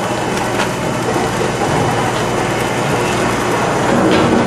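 Bag filling and sealing line machinery running: a steady mechanical clatter over a low hum, with a few sharp clicks about half a second in.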